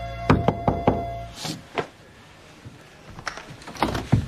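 Knuckles knocking on a door: four quick raps about a third of a second in, followed by a few lighter knocks or clicks near the end.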